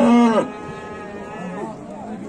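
A cow moos once, a short call of about half a second that rises, holds and drops away in pitch.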